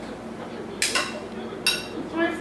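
Two sharp, ringing clinks of metal kitchenware handled on the countertop, about a second apart, over a faint steady hum.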